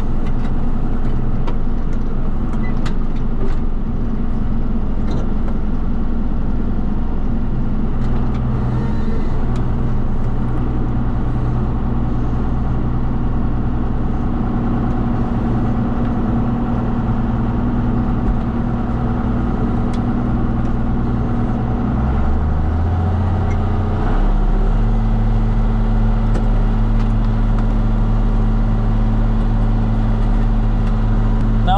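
John Deere tractor's diesel engine running steadily under load as it pulls a five-bottom moldboard plow through the soil, heard from inside the cab. The engine note shifts a little over 20 seconds in.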